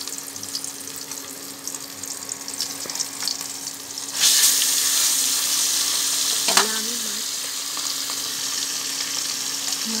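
Vegetable slices frying in hot oil: a crackling sizzle that jumps much louder about four seconds in and then carries on as a steady, loud sizzle. A brief click and short pitched sound come near the middle.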